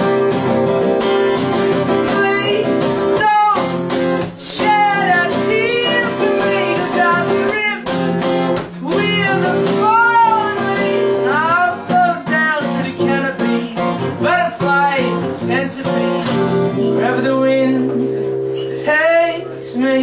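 Acoustic guitar strummed steadily with a man singing over it, the voice gliding and wavering without clear words.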